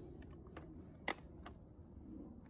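Quiet, with one sharp click about a second in and a few fainter ticks around it; the engine is not running.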